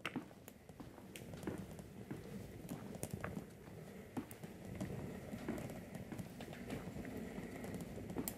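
Footsteps and a hospital bed being wheeled along: faint, irregular taps and clicks over a low rolling rumble.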